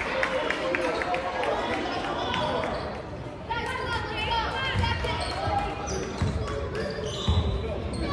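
Basketball dribbled on a hardwood gym floor, its bounces thudding mostly in the second half, with short sneaker squeaks and spectators' voices around it.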